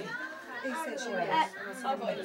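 Several people talking over one another in a room.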